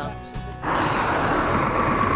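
Background music for the first moment, then an abrupt cut to loud, steady road noise from a Scania lorry tractor unit passing close by.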